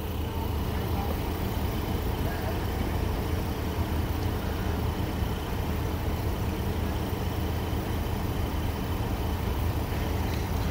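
Engines of parked emergency vehicles idling, a steady low hum.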